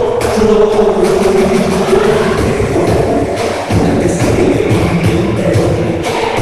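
Loud dance music playing for a Zumba routine, with a held note over the beat in the first few seconds. There is a short break a little over halfway, then the beat comes back in.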